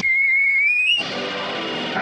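Cartoon soundtrack: a single high whistle is held for about a second, rising slightly in pitch at its end. It cuts off sharply into orchestral music.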